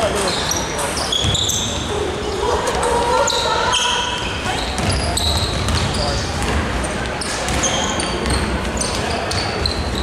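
A basketball being dribbled on a hardwood gym floor during play, with many short high-pitched sneaker squeaks from players running and cutting on the court. Everything echoes in a large hall.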